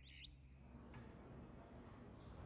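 Near silence, with a few faint, high bird chirps in the first second.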